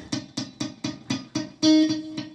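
Electric guitar picked in a quick run with left-hand muting: the fretting fingers rest on the strings without pressing, so the notes come out as short, dead plucks, about six a second. Near the end one note rings out clearly.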